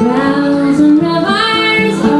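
A woman singing a folk song, her voice sliding upward about one and a half seconds in, over steady lower held notes.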